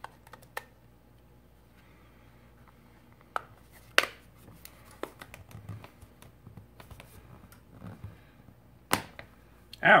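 An LG G5 smartphone's housing and screen assembly handled and pressed together by hand: scattered sharp clicks and faint rubbing, the loudest clicks about four seconds in and just before nine seconds.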